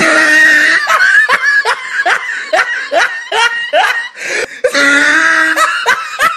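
A person laughing loudly and hard, a rapid string of short high-pitched bursts at about three a second, with longer drawn-out cries of laughter near the start and near the end.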